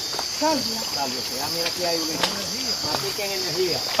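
Steady high-pitched chorus of night insects, with people's voices talking over it.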